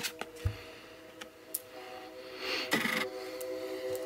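Soft background music with a few long held notes, with a few light clicks and rustles of cards being handled.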